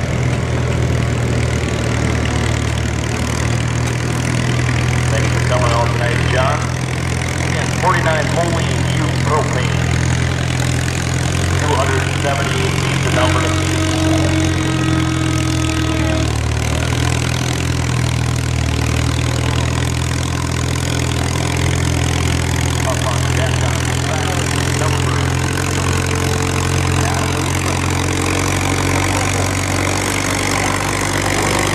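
Old farm tractor engine running steadily under load as it pulls a weight-transfer sled at a slow, even pace, with voices in the background.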